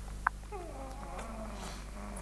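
A sharp click, then a drawn-out, wavering, cat-like animal cry that falls in pitch, over a steady low hum.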